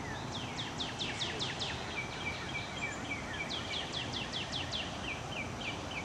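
A songbird singing two runs of rapid, downslurred whistles, each run trailing into a string of shorter, lower notes, over a steady background hiss.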